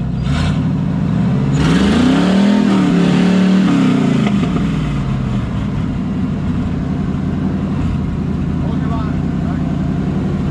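Jeep TJ Wrangler engine rock crawling: revs rise about a second and a half in, hold for a couple of seconds, then fall back to a steady low-rev running as the Jeep works up a rock ledge.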